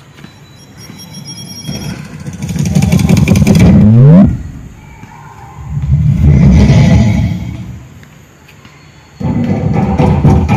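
Motor vehicles passing by on a road: the first builds up and accelerates with a rising engine pitch before dropping away sharply about four seconds in, and a second one swells past a couple of seconds later and fades.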